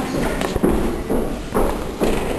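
A single sharp knock about half a second in, over indistinct background voices.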